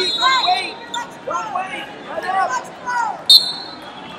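Shouting and calls echoing around a large hall, then a short, sharp referee's whistle blast a little over three seconds in that restarts the wrestling bout.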